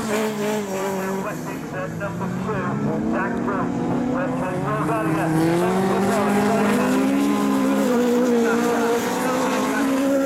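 Several single-seater autograss racing cars' engines running hard on a dirt track, their pitches overlapping and rising and falling as the drivers rev through the gears.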